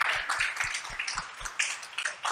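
A small audience clapping, a steady patter of many hand claps.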